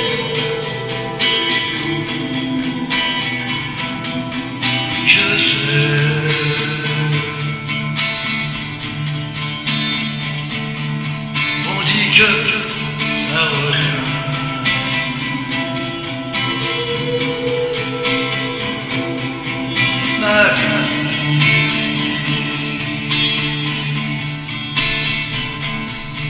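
Acoustic guitar strummed steadily, accompanying a man singing in French in several phrases.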